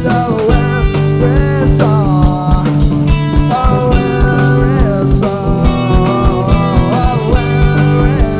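Rock band playing live: electric guitars, bass guitar and drum kit, with a steady drum beat under a melody line that slides up and down between notes.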